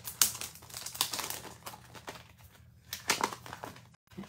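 Clear plastic packaging of a photopolymer stamp set crinkling and clicking as it is opened by hand: an irregular string of crackles and sharp clicks, the sharpest just after the start.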